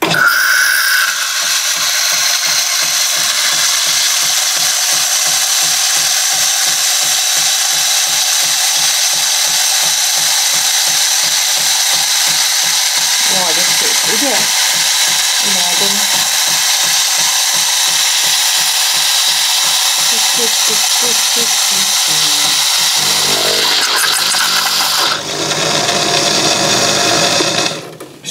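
Philips automatic espresso machine frothing and dispensing milk: a steady hiss over a rapid pulsing buzz from the pump and milk frother. It changes tone twice near the end, then cuts off.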